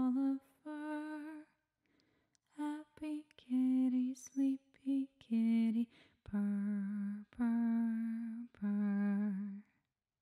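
A woman humming a slow, gentle melody a cappella, in long held notes with short breaks between phrases.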